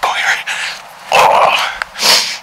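A man's heavy, excited breathing close to the microphone: loud breathy exhales and gasps, the strongest about a second in and another near the end, in the adrenaline just after shooting a buck.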